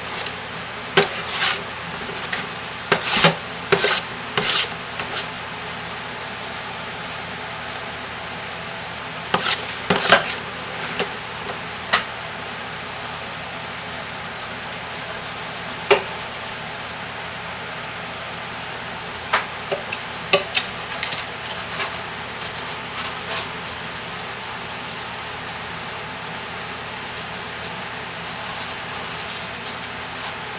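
Spoon scooping thick rebatched soap paste from a crock pot, knocking and scraping against the pot and mold in scattered clusters of short clicks, over a steady background hiss.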